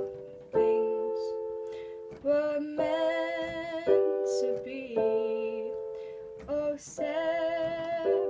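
Yamaha portable electronic keyboard played with one hand: a slow run of chords, each struck and left to ring and fade before the next, a new chord about every second.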